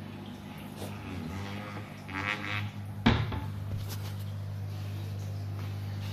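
Steady low electrical hum from the running aquarium equipment (pump or filter). A short squeaky rattle comes about two seconds in, and a single sharp knock follows about three seconds in.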